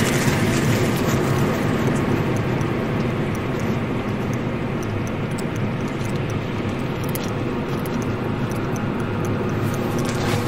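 Steady rumbling outdoor noise that slowly gets a little quieter, with a few faint ticks.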